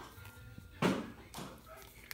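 A few soft knocks as an upturned can of condensed cream of chicken soup is shaken over a slow cooker crock, the thick soup stuck in the can.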